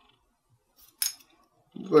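A single short metallic click about a second in, from handling a small metal dugout case for a one-hitter pipe.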